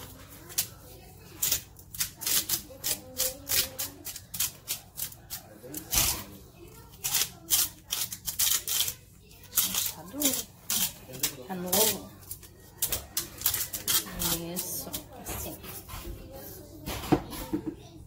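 Salt grinder clicking in quick, irregular runs as pink salt is ground over raw chicken pieces.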